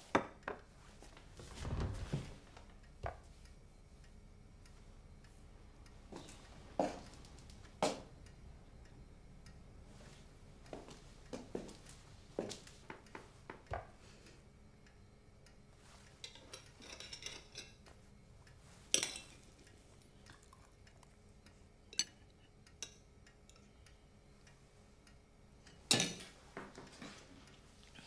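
Cutlery tapping and scraping on china plates as pie is cut, served and eaten. The clinks and taps are short and scattered, a second or more apart, with quiet room tone between them.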